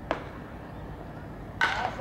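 A baseball bat cracks once against a pitched ball just after the start, a single sharp hit. Near the end, voices shout out.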